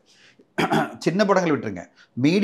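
A man speaking, after a short breath in.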